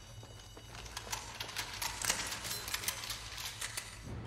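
A low steady hum, joined from about a second in by many irregular sharp clicks and taps.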